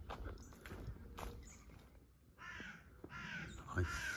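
A bird calls twice, two harsh calls of about half a second each, roughly two and a half and three seconds in, with faint scattered clicks before them.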